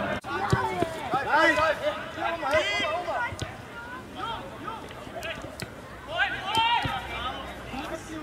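Raised voices of football players and people on the touchline shouting and calling out across the pitch, loudest in the first three seconds and again near the end, with a few sharp knocks in between.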